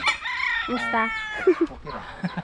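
A rooster crowing, one long call through about the first second. A single sharp chop of a bolo knife into a log follows about one and a half seconds in.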